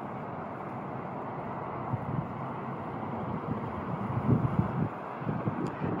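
Wind buffeting a phone microphone: a steady outdoor hiss with irregular low gusts that grow stronger in the second half.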